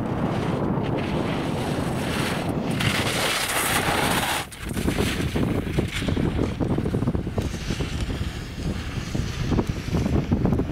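Wind buffeting the microphone, a gusty rumbling rush with crackles. About three seconds in, a brighter, louder hiss lasts about a second and a half, then cuts off sharply.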